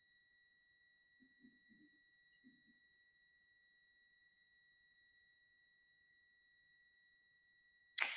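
Near silence: room tone with a faint, steady high-pitched tone, plus a few faint low sounds between about one and three seconds in.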